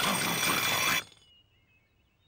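Cartoon sound effect: a loud, harsh buzzing sound lasting about a second that cuts off abruptly, followed by a few faint, high chirping tones.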